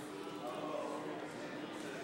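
Indistinct chatter of many people talking at once, a steady murmur with no clear words, with a faint steady hum underneath.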